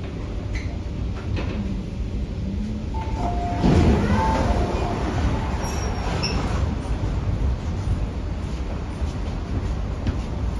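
Inside an MTR K-Train (Hyundai-Rotem electric multiple unit) car: a steady low rumble, then about three and a half seconds in the passenger doors slide open with a loud whoosh and a few short tones.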